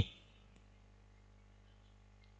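Almost no sound: a faint steady low hum, with the tail of a man's commentary in the first instant.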